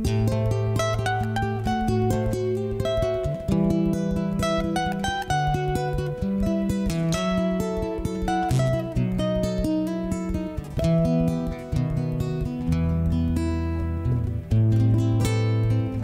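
Three acoustic guitars playing the instrumental introduction of a ballad: picked notes and strums over held bass notes.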